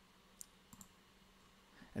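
Two faint computer mouse clicks, about 0.4 s apart, against near-silent room tone.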